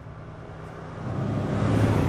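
A vehicle passing along the street, its road noise swelling to a peak near the end and then falling away, over a low steady hum.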